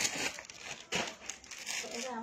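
Clothes and their plastic packaging rustling and crinkling as they are handled, loudest at the start and again about a second in.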